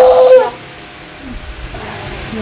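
A toddler's brief whining cry: one loud, steady held note lasting about half a second, then it stops.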